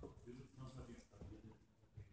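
Faint, quiet speech in the first second or so, then near silence in a large room.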